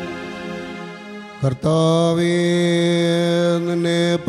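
Syro-Malankara liturgical music: a held chanted note fades away, and about a second and a half in a new steady note begins and is held.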